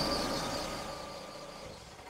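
A car pulling in with its engine running, the sound fading away gradually toward the end.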